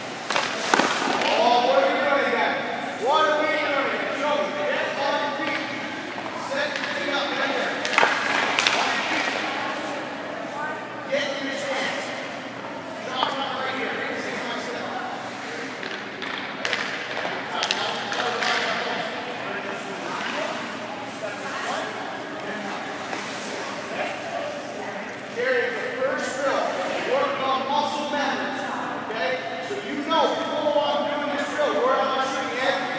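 Voices talking in an echoing ice rink, with a few sharp knocks from goaltender training on the ice: about a second in, and again around eight and thirteen seconds.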